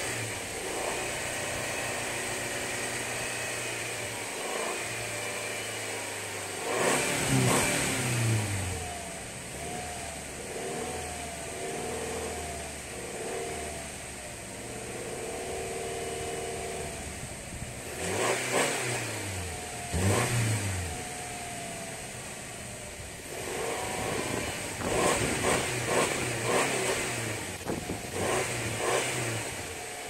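Subaru Outback engine idling and being revved while Sea Foam engine cleaner burns off through the exhaust. The engine speeds up and drops back about a quarter of the way in, twice more a little past the middle, and in a run of short blips near the end.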